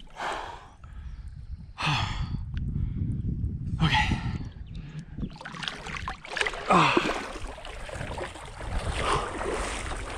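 A man gasps and exhales sharply three times while wetting himself in a shallow creek pool. After about five seconds he is splashing and sloshing the water, a steady rough noise with sharper splashes in it.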